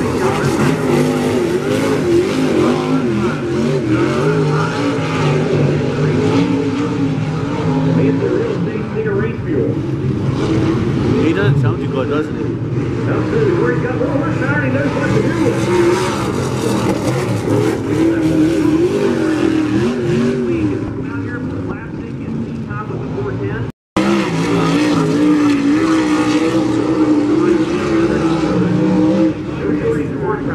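Dirt-track race car engines running around the oval, their pitch rising and falling as the cars accelerate and lift through the turns. The sound cuts out for a split second about three-quarters of the way through, then resumes.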